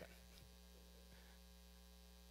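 Near silence with a steady low electrical hum underneath.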